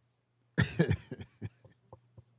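A person coughs once about half a second in, followed by a few faint clicks.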